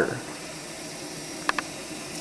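Steady hiss of water rushing through a Whirlpool water softener during a manual recharge (regeneration) cycle, with two short clicks about one and a half seconds in.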